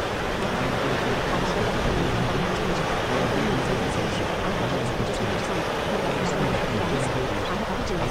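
Steady, even water-like rushing noise used as a masking bed, with faint sped-up spoken affirmations layered beneath it.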